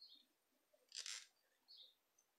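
Near silence, broken by faint handwork sounds of a crochet hook working wool yarn: a few tiny high squeaks and a soft brief rustle about a second in as a stitch is pulled through.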